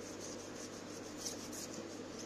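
Wax crayon rubbing across a paper plate as it is coloured in, in faint repeated round strokes.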